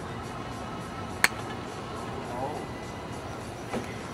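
A golf iron striking a ball off an artificial-turf hitting mat: one sharp click about a second in.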